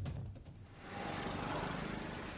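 Steady outdoor street noise, like traffic, fading in about half a second in and holding even.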